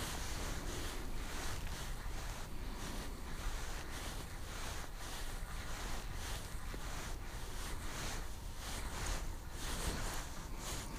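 Steady wind noise on the microphone, with faint regular ticks, about two to three a second, from a spinning reel being cranked to bring up a hooked fish.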